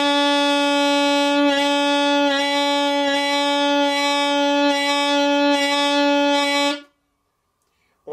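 Saxophone holding one long note for about seven seconds, with a slow, even vibrato pulsing about once every 0.8 seconds: quarter-note vibrato played as a practice exercise. The note stops cleanly near the end.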